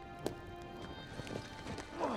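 Film soundtrack: sustained score tones fading out, with a sharp click about a quarter-second in and a few quick falling tones in the second second.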